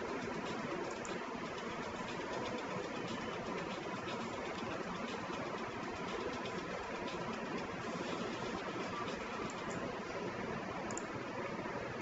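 Steady, faint background hiss with no distinct events.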